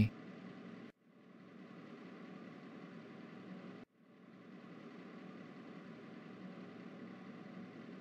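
Faint, steady background noise, a low even rumble-like ambience, that cuts out briefly about a second in and again about four seconds in.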